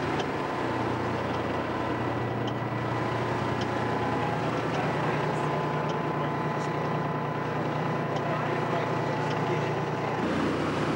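Steady engine drone of a passenger launch under way, heard from inside its cabin.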